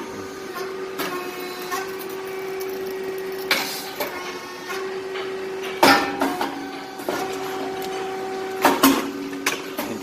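Grain cake popping machine (rice cake machine) running with a steady hum, broken by sharp pops as the heated moulds release and the cakes puff: one about three and a half seconds in, the loudest about six seconds in, and two close together near the end.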